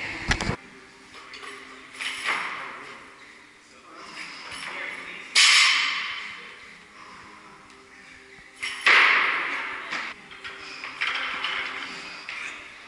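Gym weights dropped or set down on the floor: a sharp thud just after the start, a lighter knock about two seconds in, and two loud clanks about five and a half and nine seconds in, each ringing out in the big room.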